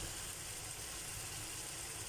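Faint, steady sizzle of beaten egg and sliced vegetables frying in a pan.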